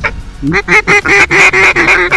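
A waterfowl call blown close by in a rapid, loud series of about eight honking notes, starting about half a second in, calling to an incoming flock.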